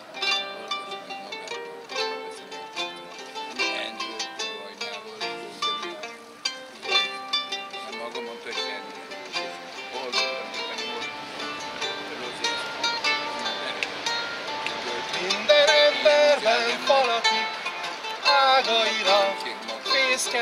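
A mandolin-like plucked string instrument playing an instrumental introduction of picked notes and chords. A man's singing voice joins in over it in the last few seconds.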